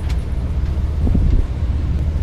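Bus engine running, a steady low sound heard from inside the bus cabin.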